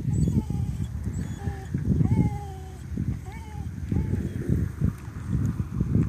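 Wind buffeting the microphone: a gusty low rumble that rises and falls. A few faint short pitched sounds sit over it.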